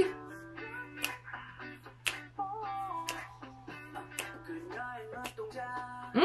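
Pop song from a music video playing at moderate volume, with a funky, jazzy feel: a run of shifting melodic notes over accompaniment.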